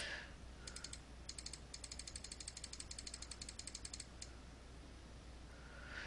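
Faint, rapid clicking at a computer, about ten clicks a second in short runs that stop a little past halfway, as a numeric setting is stepped up.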